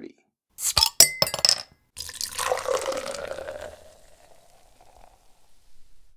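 A few sharp clicks and a clink, then beer poured into a glass, the pitch of the pour rising as the glass fills before it fades out.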